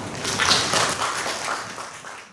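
Audience clapping: a dense patter of many hand claps, easing off near the end.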